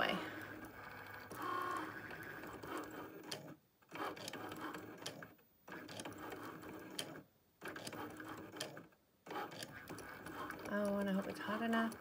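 Cricut Maker's carriage and roller motors running in stretches as the Foil Quill draws, stopping and starting with four short pauses between moves.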